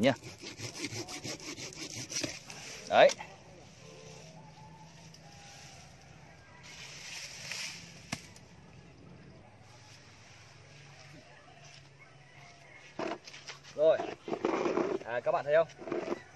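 A Chinese-made hand pruning saw cutting through a thick living bonsai branch, in rasping strokes: a quick run at the start and another short run around the middle. This is the cut that shortens the tree's leader.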